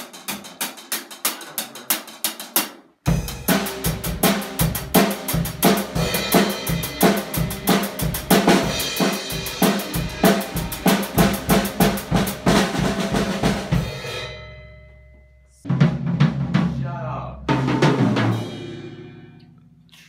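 Rapid fingerpicking on a nylon-string classical guitar for about three seconds, then a Pearl drum kit played in a fast, busy pattern of kick, snare, toms and cymbals for about ten seconds, which dies away. Two single loud hits on the kit follow, each left to ring out.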